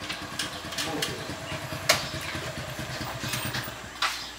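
A motorcycle engine running at idle, a steady rapid low pulsing, with a single sharp click about two seconds in.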